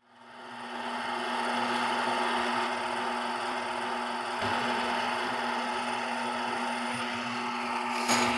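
Small variable-speed bench lathe running steadily: an even motor hum with a constant low tone, fading in over the first second.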